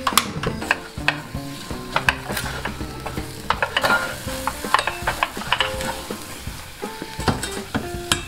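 Silicone spatula stirring and scraping choux pastry dough against a stainless steel saucepan on a gas burner, with a light sizzle as the dough is dried out over medium heat. The strokes come as many short scrapes and knocks.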